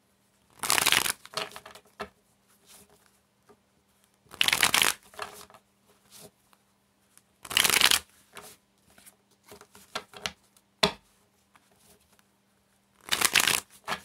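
A deck of Osho Zen Tarot cards shuffled by hand: four short bursts of card rustling, with faint taps of the cards in between.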